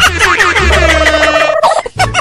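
Comedy background music: a steady bass line under quick warbling, gobble-like pitched sounds that swoop up and down, with a brief dropout near the end.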